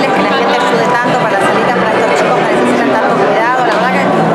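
Speech over a steady background of crowd chatter, with several voices overlapping.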